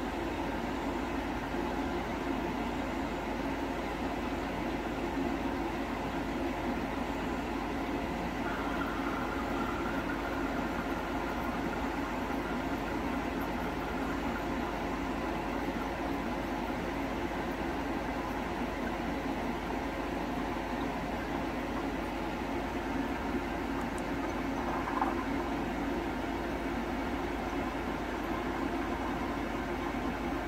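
Steady mechanical hum with an even rush of air noise, unchanging throughout, like running fans or other room equipment.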